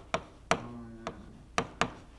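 Pen tip tapping and clicking on the glass of a touchscreen display while writing: about five short, sharp taps, unevenly spaced.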